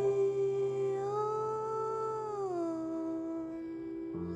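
A woman's voice holds one long sung note over a sustained piano chord. The pitch rises slightly about a second in and settles back down about halfway through, while the piano chord fades.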